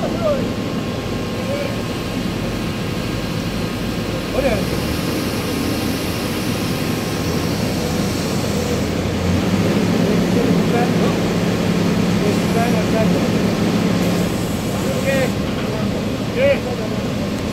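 Steady, loud machinery noise of a drilling rig floor, a continuous hum and drone of engines and pumps, which swells a little with a steadier low drone past the middle for about five seconds. Short calls from voices break in a few times.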